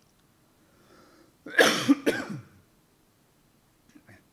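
A man coughing: a short, loud fit of two or three coughs about a second and a half in.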